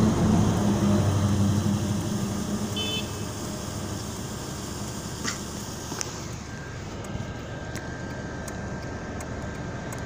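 Car engine and road noise heard from inside the moving car's cabin. A low engine hum is loudest over the first three seconds, then settles into steady road noise, with a couple of light clicks about five and six seconds in.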